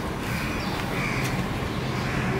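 A crow cawing in the background, two short caws, over steady background noise.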